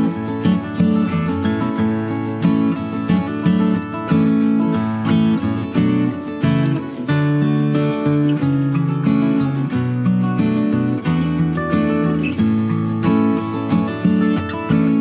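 Background music with acoustic guitar playing, plucked and strummed notes at a steady pace.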